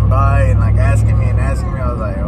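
A man talking over the steady low road and engine rumble inside a moving pickup truck's cabin; the rumble eases slightly about one and a half seconds in.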